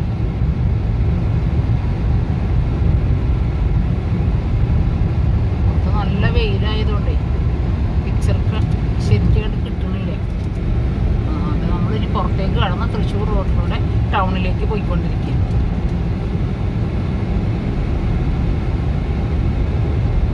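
Steady low rumble of a car's engine and tyres on the road, heard from inside the cabin while driving at speed.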